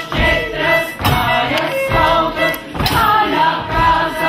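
A group of people singing a song together, accompanied by a violin and a tuba, with a low beat about once a second.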